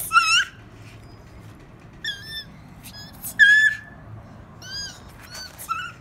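A small pet, likely a guinea pig, gives a series of short, high-pitched squeaks in bursts, about seven in all; the longest and loudest comes about three seconds in.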